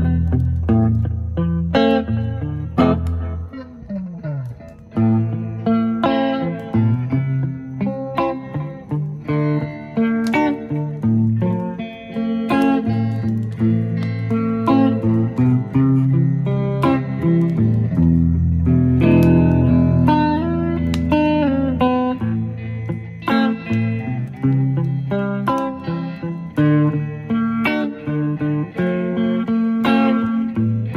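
Three electric guitars playing together in an instrumental jam, with picked chords and single-note lines over low notes and an occasional bent or slid note.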